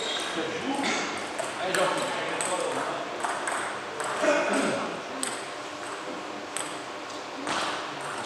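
Table tennis balls clicking at irregular intervals off bats and tables, with voices in a large hall.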